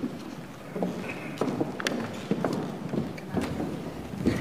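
Footsteps and shuffling on a hard floor as people walk about a meeting room, with irregular light knocks and clicks.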